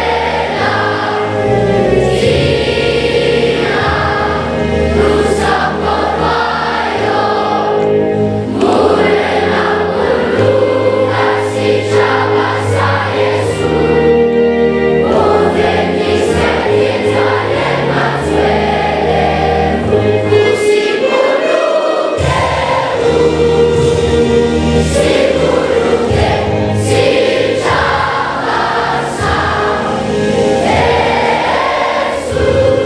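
Many voices singing together over backing music with a bass line and a regular beat; the bass drops out briefly about two-thirds of the way through.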